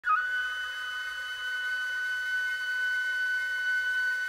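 A single long, high note on a flute-like wind instrument, entering with a quick step up in pitch and then held steady.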